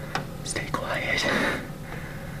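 A person whispering a few words, breathy and hissy, over a steady low hum.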